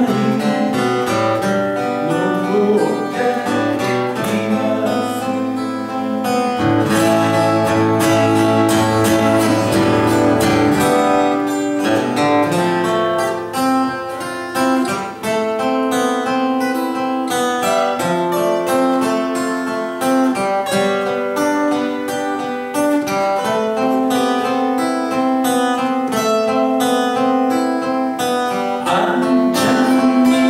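Two steel-string acoustic guitars playing a folk song together, with strummed chords.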